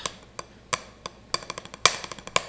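Drumsticks striking a drum practice pad in an eighth-note pattern: a few spaced strokes at first, then a quicker, denser run through the second half.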